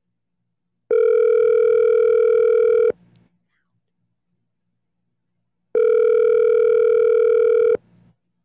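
Phone ringback tone of an outgoing call waiting to be answered: two identical steady rings of about two seconds each, roughly three seconds apart.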